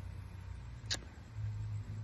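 Low, steady background rumble with a single sharp click about a second in.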